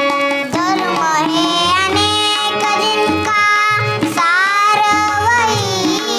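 A young girl singing, accompanied by tabla and harmonium; her voice comes in about half a second in, over the harmonium's held notes and the tabla strokes.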